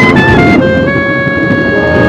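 Orchestral film-score music: a few quick notes in the first half-second, then a long held chord.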